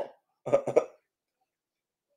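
A man's short laugh: three quick bursts about half a second in.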